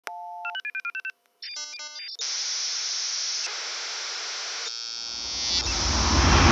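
Electronic logo-intro sound effect: a steady beep and a quick run of short, alternating-pitch bleeps and chirps, then TV-static hiss for about three seconds. Near the end a low rumbling swell rises as the logo sound builds.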